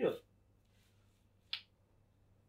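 The end of a man's spoken word, then a single short, sharp click about one and a half seconds in.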